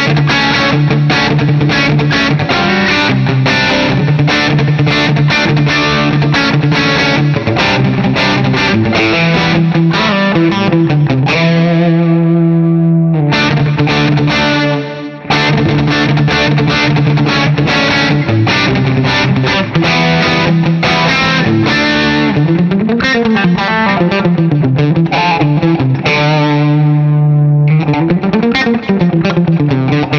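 Vola electric guitar played through the Bogner Ecstasy module of a Synergy SYN-50 preamp with drive, distorted tone: runs of fast-picked notes, a held note that breaks off briefly about halfway through, and wavering bent notes near the end.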